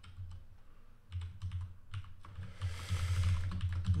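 Typing on a computer keyboard: a run of key clicks, a few at first, then quicker and denser from about a second in.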